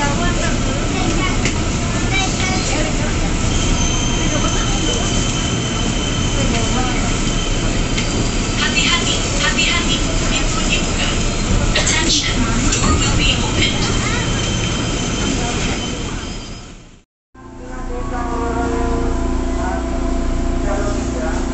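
Inside an electric commuter train rolling slowly along a station platform: steady running noise of wheels on track, with a thin high squeal a few seconds in and a few sharp knocks. Near the end the sound cuts out for an instant, then comes back as a steadier hum of the train standing at the platform.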